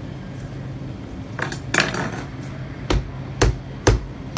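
Three sharp knocks about half a second apart near the end: a cheese knife being struck to drive it into the hard rind of a whole Parmigiano Reggiano wheel. They come after a short scrape about a second and a half in.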